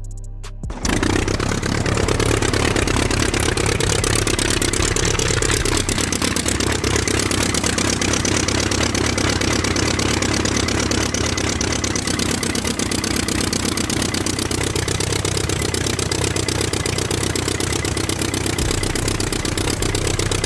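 A toy locomotive's miniature DIY diesel-engine model starts abruptly about a second in. It runs with a fast, even chugging at a loud, constant level, like an engine idling.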